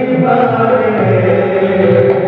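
A man singing a devotional-style Hindi song in long, held, chant-like notes, with dholak drumming underneath.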